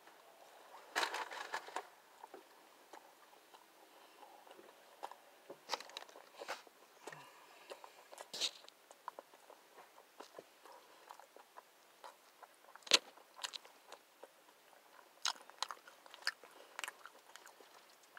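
Close-up chewing and biting into a fast-food double burger: soft, scattered crunching and mouth sounds. There is a cluster about a second in and a sharper crunch about two-thirds of the way through.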